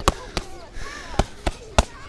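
Boxing gloves smacking padded focus mitts: two punches near the start, then a quick three-punch combination about a second in.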